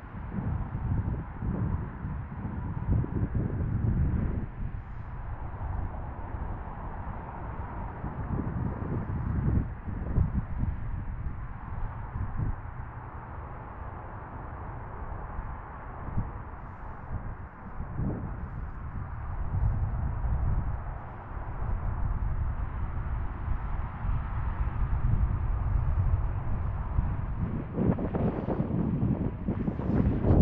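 Wind buffeting the microphone in gusts that rise and fall, with a low rumble that is stronger near the end.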